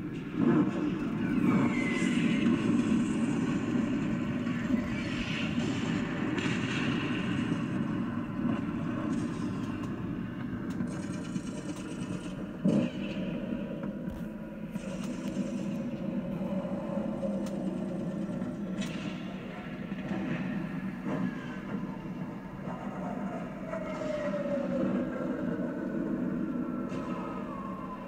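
A steady low rumble, with a few falling whines over it and a sharp knock about 13 seconds in.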